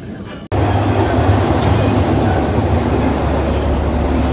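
Steady rumble of a moving train, heard from inside the carriage, starting abruptly about half a second in.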